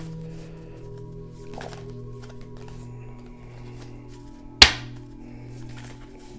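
Slow ambient background music of steady held tones, with a single sharp knock about four and a half seconds in that rings briefly and is the loudest sound.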